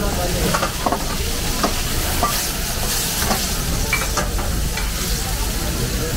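Tomatoes and peppers sizzling in oil in a steel frying pan over a gas burner with a steady low rumble. A handful of short metal clinks come as the pan is tossed and knocked against the burner ring.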